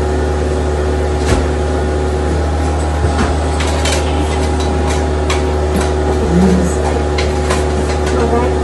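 A steady low mechanical hum, with light scattered clicks and rustles of artificial fall leaves and stems being handled as a pipe cleaner is twisted around a branch of the swag.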